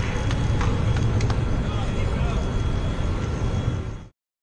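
Outdoor race-course ambience: a steady low rumble with a background of voices and a few sharp clicks, which cuts off suddenly at the end.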